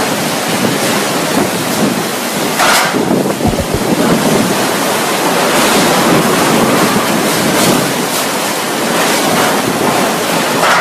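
Cyclone-force wind and heavy driving rain, loud and gusting, with a surge about three seconds in. Wind buffets the microphone, and there is a low thud from it near the middle.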